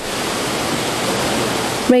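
Fast-flowing floodwater rushing steadily in a torrent, with a narrator's voice coming in at the very end.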